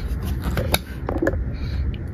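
Cardboard toy-car box being handled and set down, with light rubbing and scattered clicks, the sharpest about three quarters of a second in.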